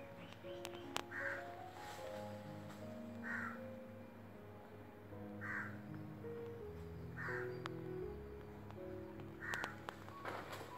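Background music of slow, held notes, over which a crow caws five times, about one harsh caw every two seconds, with a few faint clicks.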